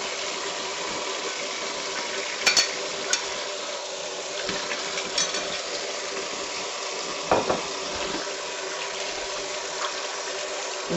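Kitchen faucet running steadily into a bowl of fruit in the sink as the fruit is rinsed under the stream. A few light knocks sound a few seconds in and again later.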